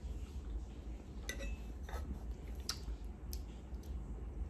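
Quiet sipping and swallowing from a drink bottle, with a few faint short clicks from the mouth and bottle, over a low steady room hum.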